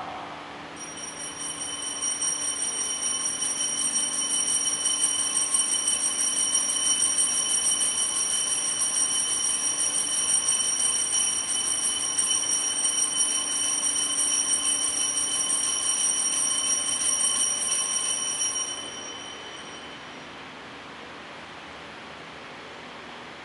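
Altar bell ringing continuously with a rapid, even trill for about eighteen seconds, then stopping and fading out. This is the bell that marks the elevation at the consecration of the Mass.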